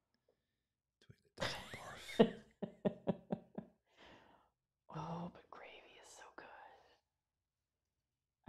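Quiet, breathy, whispered voices in two short stretches, starting about a second and a half in and again about five seconds in.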